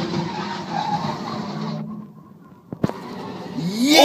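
A box truck's engine and skidding tyres as it rams and shoves cars, heard as a steady rushing noise that cuts off about two seconds in, followed by two sharp knocks.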